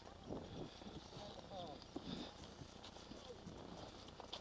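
Skis scraping and crunching on packed snow with irregular knocks as a skier sets off down the slope.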